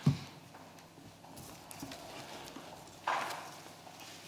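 A thump right at the start, then faint footsteps and knocks on a hard floor, and a short rustle or scrape about three seconds in.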